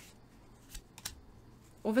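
Tarot card being drawn and laid onto a spread of cards: a few light clicks and rustles of card stock. A woman's voice starts near the end.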